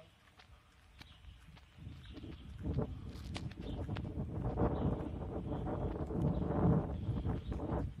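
Footsteps on outdoor paving with rumbling, buffeting noise on a handheld phone microphone, growing louder from about two seconds in.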